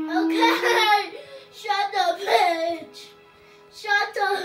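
A young child's voice singing without clear words in three loud bursts of about a second each, its pitch sliding up and down.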